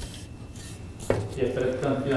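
A single sharp metallic click about a second in, from the bicycle's rear derailleur and chain being handled.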